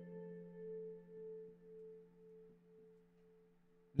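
Soft ambient background music: a few sustained, bell-like tones held steady, swelling and ebbing gently and fading to almost nothing near the end.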